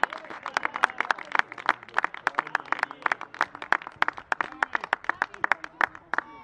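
Scattered applause from a small group of spectators: distinct hand claps, several a second, uneven, for a goal just scored.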